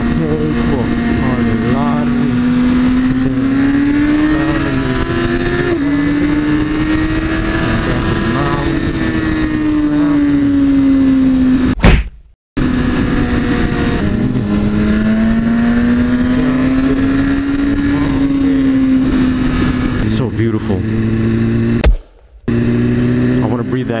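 BMW S1000RR inline-four sportbike engine running at steady cruising revs, its pitch drifting slowly up and down, with wind noise on the bike-mounted microphone. The sound cuts out briefly twice, near the middle and near the end.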